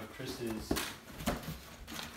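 Cardboard shipping box being opened by hand, its flaps pulled back, with a couple of short sharp knocks, under low voices.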